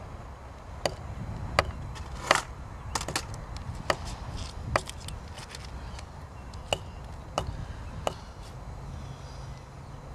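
A string of sharp knocks at irregular intervals, about ten in all, over a steady low background rumble.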